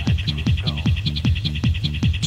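Techno music: a fast, steady kick-drum beat, about four hits a second, under a repeating high electronic pattern.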